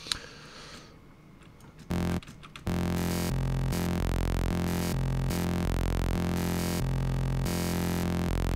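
Serum software synthesizer holding a low note from a custom hand-drawn wavetable, starting about two seconds in, while the wavetable position is swept through its frames, so the timbre shifts in steps between saw-like, fuzzy noise-like and wavy tones.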